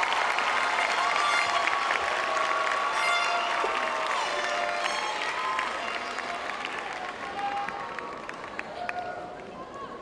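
Large audience applauding with many voices calling and cheering over the clapping, dying away over the last few seconds.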